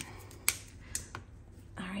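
Alcohol markers being handled on a tabletop: one sharp click about half a second in, then a couple of lighter clicks, as markers are put down, picked up and uncapped.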